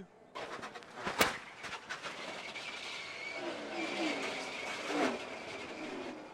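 Onboard-camera audio from a NASCAR stock car at speed: a rushing, noisy din with one sharp crack about a second in.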